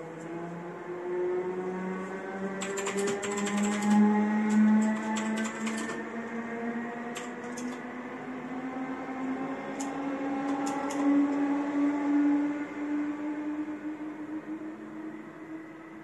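Typing on a mechanical keyboard in two short runs of key clicks, over a louder, steady hum that slowly rises in pitch throughout.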